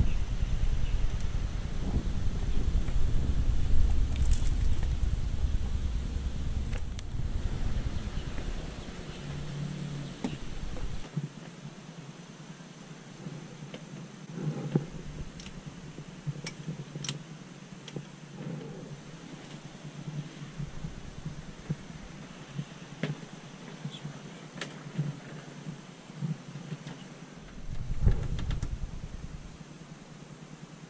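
Low rumble of wind on the microphone for about the first ten seconds, then a much quieter stretch with scattered clicks and knocks, and a brief return of the rumble near the end.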